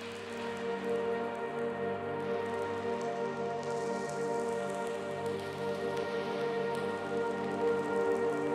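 Ambient background music: held, sustained chords over a steady hiss-like noise layer, growing louder over the first second as the track comes in.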